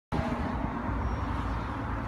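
Steady low rumble of outdoor background noise, with vehicle sound in it and no distinct events.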